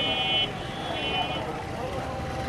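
Busy street ambience with background voices and traffic noise. A high-pitched horn or beeper sounds in two short bursts in the first second and a half.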